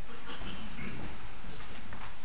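Congregation rising from their chairs: shuffling, rustling and small knocks of chairs and feet.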